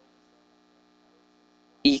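Faint, steady electrical hum, typical of mains hum on the recording, fills a pause. A man's voice starts again near the end.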